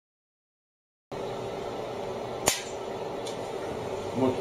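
A shotgun dry-fired at a simulated target: one sharp, loud click about halfway through, over steady room noise that cuts in about a second in.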